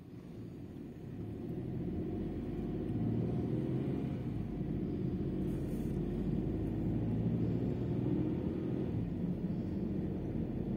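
Car engine and road rumble heard from inside the cabin, growing louder over the first three seconds and then running steadily.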